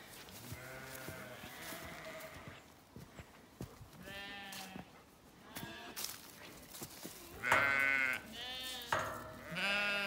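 Sheep bleating, about five separate calls, the loudest ones near the end.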